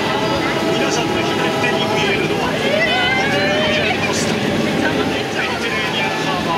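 Engine of a Transit Steamer Line excursion boat running steadily under way, with people's voices talking over it in the middle.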